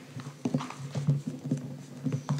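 Faint, indistinct low voices in the room, broken by a few light clicks and knocks.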